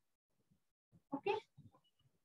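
Near silence, then a single short spoken "okay" about a second in.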